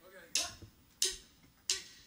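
Drummer's count-in: three sharp, evenly spaced clicks, about one and a half a second, of a kind typical of drumsticks struck together to set the tempo before the band comes in.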